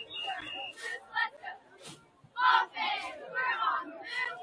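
Spectators at a football game shouting and calling out, loudest in one shout about two and a half seconds in.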